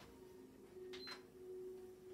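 Faint, steady electrical hum of a few low pitches that starts at the outset, with two soft clicks and a very short high beep about a second in.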